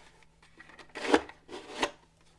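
Plastic on plastic: two short scraping slides as the replica X-wing helmet's visor is worked in its track, about a second in and again near the end.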